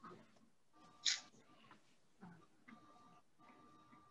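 Quiet pause on a video call: faint room tone with one short, soft hiss about a second in.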